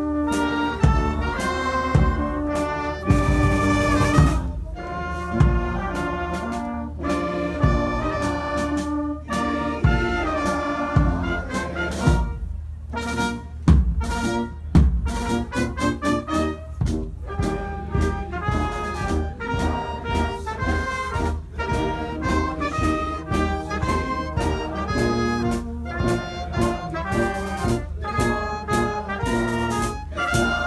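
Brass band playing a piece with trumpets and trombones over regular drum beats.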